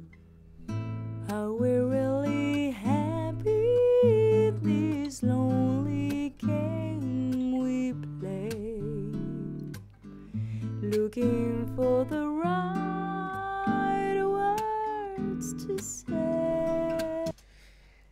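Mix playback of a dry song: a sung vocal over an acoustic guitar recorded with two microphones, one at the soundhole and one at the neck, panned left and right. All three tracks are low-cut, with no reverb or other effects yet. The singing comes in about a second in and pauses briefly twice.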